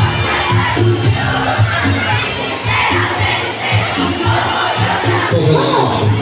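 Large crowd of uniformed school students shouting and cheering, over loudspeaker music with a steady bass beat. A melody comes back in clearly near the end.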